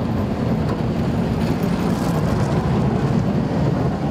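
Volvo motor grader's diesel engine running steadily, a low rumble, as the machine rolls past close by.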